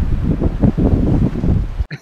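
Wind buffeting the microphone: a loud, irregular rumble that cuts off abruptly near the end.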